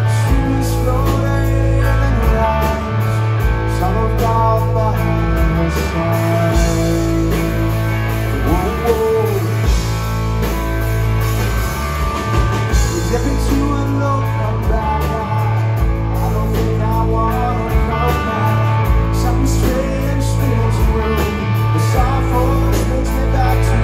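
Live rock band playing: electric guitar, bass guitar and drum kit, with a male lead singer's vocal over them, heard amplified in a club from among the crowd.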